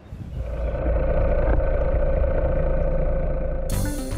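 A steady low rumble with a held mid-pitched tone, swelling up over the first second. A hissing wash comes in near the end.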